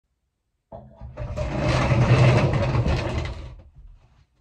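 Sound effect of running mechanical gears, a whirring, rattling machine noise. It comes in just under a second in, swells, holds loud for about two seconds, then fades out shortly before the end.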